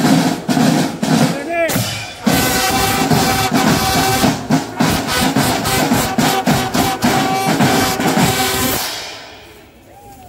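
School marching band playing: a fast, even drum rhythm on snare drums with a steady held brass note over it, fading out near the end.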